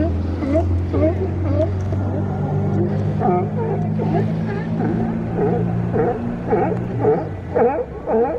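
A group of sea lions calling: many overlapping short bleating barks that dip and rise in pitch, coming every half second or so and crowding together toward the end. Under them runs a steady low hum that fades out near the end.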